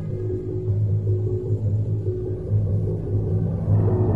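Dark, free-form jazz from a guitar, double bass and drums trio: a strong low sustained drone with a rumbling texture under scattered higher tones, swelling louder near the end.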